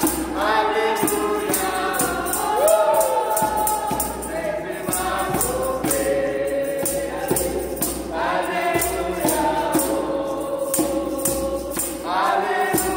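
A small group of women singing a gospel song in unison over a djembe hand drum that keeps a steady beat of about four strokes a second.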